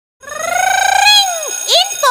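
Animated channel-logo sting: a high, sing-song cartoon voice holds a long note that rises slowly, then drops away sharply, followed by a quick rising-and-falling chirp.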